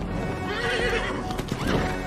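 An animal call with a wavering pitch, lasting about half a second, over film score music, followed by a few sharp knocks.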